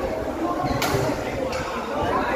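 Overlapping voices of players and spectators in a badminton hall, with one sharp crack a little under a second in: a racket hitting a shuttlecock.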